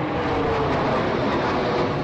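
Steady, even rumbling noise with no distinct events, of the mechanical or traffic kind.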